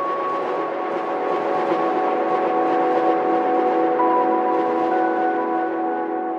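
Intro sound effect: a sustained chord of several steady tones under a hissy wash, beginning to fade away near the end.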